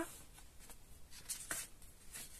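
Hands handling a paperback coloring book and turning back its cover: faint rustling and sliding of paper, with a sharper rustle about one and a half seconds in.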